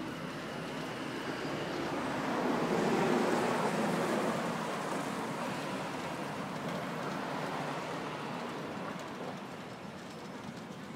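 A road vehicle passing close by, its sound swelling to a peak about three seconds in and then slowly fading away.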